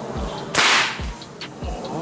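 A single sharp crack about half a second in: a slingshot shot striking the primer of a 7.62 mm rifle cartridge. The primer goes off but the round does not fire, a misfire the shooter puts down to the powder having got wet.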